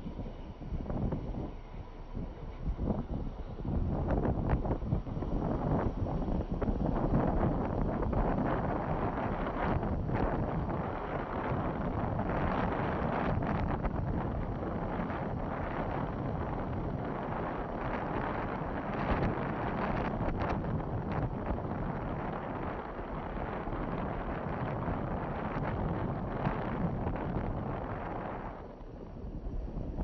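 Wind rushing over the microphone together with the road noise of a moving car, growing louder about four seconds in and easing off near the end.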